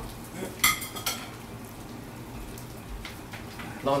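Food frying in a pan on a gas stove with a faint steady sizzle, and metal utensils clinking against the cookware, two sharp clinks about half a second and a second in and a fainter one near the end.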